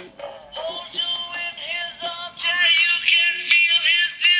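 A song with a singing voice played through the small speaker of a homemade Bluetooth player built into a mint tin. The sound is thin, with little bass.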